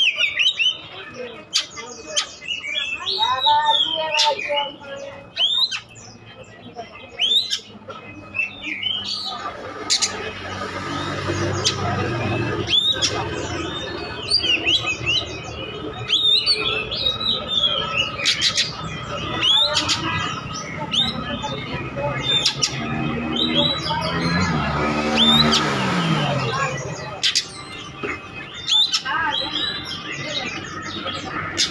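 Oriental magpie-robin singing: a varied run of sharp chirps and quick whistled phrases.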